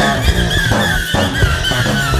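Instrumental rock passage: guitar over a steady, dense low rhythm, with a high line that repeatedly slides and bends in pitch.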